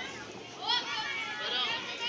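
Young children's voices chattering and calling out, high-pitched, growing louder about two-thirds of a second in.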